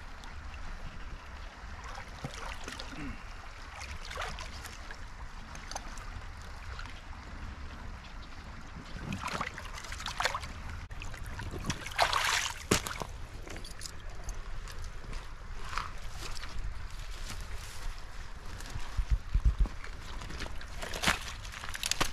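Shallow river water sloshing and splashing as a drowned beaver is hauled up out of the water by its trap chain, water running off it. The loudest splashing comes around the middle, with scattered smaller splashes before and after.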